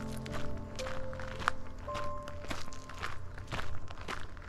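Footsteps on a gravel path, about two steps a second, under soft background music of held notes that stops about halfway through.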